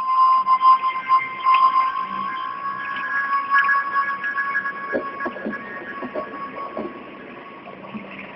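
A shrill alarm-like sound effect of steady high tones that starts suddenly and slowly fades over the second half, with a few scattered knocks about five seconds in.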